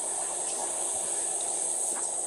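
Steady high-pitched insect chorus, the drone of crickets or cicadas in the grass and trees, running evenly with a faint hiss under it.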